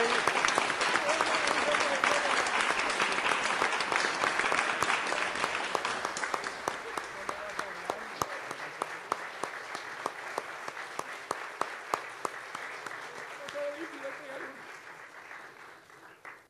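An audience applauding: dense clapping that thins after about six seconds into scattered single claps and dies away near the end.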